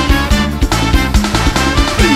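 Upbeat Thai pop song in an instrumental passage without singing: band music with a steady drum beat and bass.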